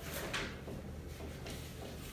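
A brief scraping or sliding sound just after the start, over a steady low hum in the room.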